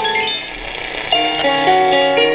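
Music playing through the loudspeaker of a 1938 Airline 62-1100 tube console radio, with a brief dip about half a second in before new notes come in about a second in.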